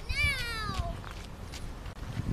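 A single high-pitched cry that slides steadily downward in pitch for under a second, just after a short rising note.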